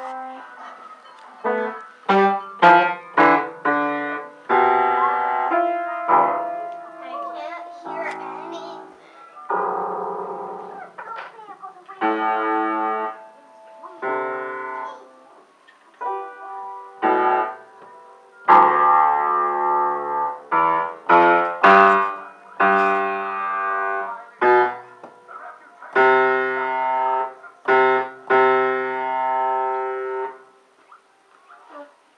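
Upright piano keys banged by a toddler: irregular, loud strikes of several keys at once, some in quick runs, with the notes ringing on and fading between hits.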